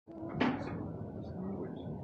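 A single clunk from a sheet-metal door about half a second in, followed by a low steady background murmur.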